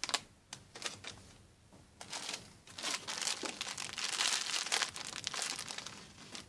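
Clear plastic bags crinkling in the hands: a few sharp crackles in the first second, then a dense spell of crinkling from about two seconds in until near the end.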